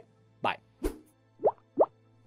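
Two short rising pop sound effects about a third of a second apart, after a single low thump, over a faint steady music bed.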